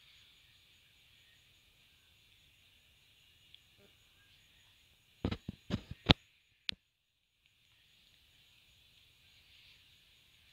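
Faint steady hiss of room noise. About five seconds in it is broken by a quick run of sharp clicks, the loudest just after six seconds and one more a little later. Then there is about a second of dead silence.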